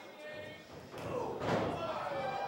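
A single heavy thud of a body landing on the wrestling ring's mat about a second in, with voices shouting around it.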